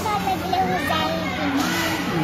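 High-pitched children's voices chattering and calling over one another, with music faintly underneath.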